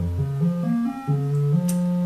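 A modular synthesizer tone stepping through random pitches, holding each note briefly before jumping to a new one several times a second. The steps come from a sample-and-hold sampling white noise, clocked here by a sawtooth wave, and sequencing the oscillator's pitch.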